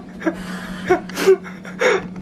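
A woman's short, muffled gasps and whimpers through the hand over her mouth, a sharp breathy one a little after a second in and another near the end. They are her reaction to tasting a failed vegan flan that she finds bad and gritty.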